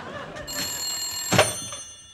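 A desk telephone's bell ringing briefly as the phone is hung up, with a sharp knock about a second and a half in.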